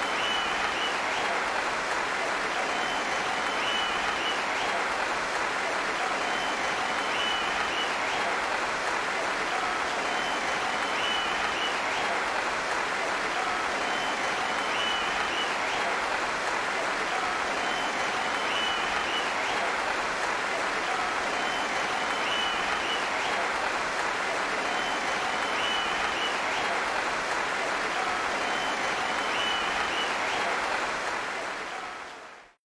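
Large audience applauding steadily and unbroken for a new world champion.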